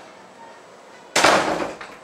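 A single loud bang about a second in, dying away over about half a second.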